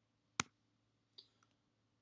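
A single sharp click a little under half a second in, then a much fainter tick a bit past the middle, in an otherwise quiet pause.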